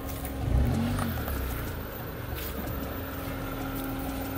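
Small sedan's engine running, with a brief rise and fall in revs about half a second in before it settles back to a steady hum.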